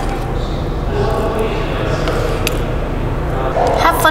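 Indistinct background voices over a steady low hum, with a few faint clicks.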